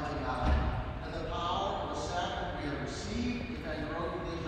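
Indistinct speech in a large, echoing church, with a low thump about half a second in.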